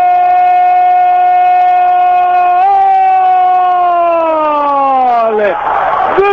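A male radio football commentator's long, drawn-out shout of "gol" for a goal, held on one loud note. It lifts slightly about two and a half seconds in, then slides down in pitch and breaks off a little before the end.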